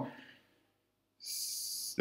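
A man's sharp intake of breath through the mouth, a steady hiss lasting under a second, starting about a second in and cutting off as he begins to speak again.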